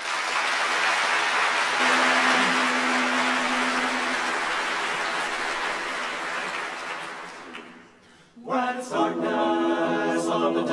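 Audience applause that fades away over about eight seconds, then a young men's a cappella choir starts singing in close harmony on a held chord.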